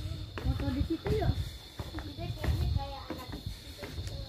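Indistinct talking in short snatches, with a faint steady high-pitched tone underneath.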